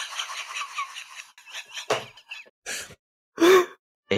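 Breathy gasps and sighs trailing off from laughter, followed by a few short breathy bursts, the loudest near the end.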